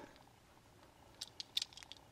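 Faint handling noise: a handful of small, quick clicks bunched together, starting a little after a second in, as fingers turn a diecast toy car.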